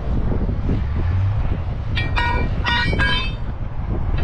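Steady low rumble of wind and vehicle noise outdoors, with four short tooting tones close together about two seconds in, like a horn sounding somewhere nearby.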